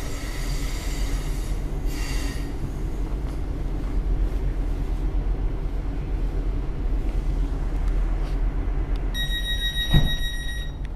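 Cabin sound inside a Class 707 Desiro City electric multiple unit: a low rumble throughout, with a high metallic squeal in the first two and a half seconds. Near the end comes an electronic door warning tone lasting about a second and a half.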